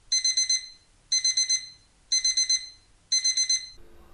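Digital alarm-clock beeping from the countdown timer, signalling that time is up: four bursts of rapid high-pitched beeps, about one burst a second, each burst of four quick beeps.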